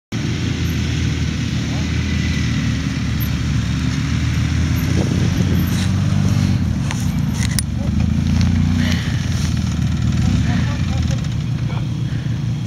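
Several quad bike (ATV) engines idling together in a steady, low running sound, with a few short clicks in the middle.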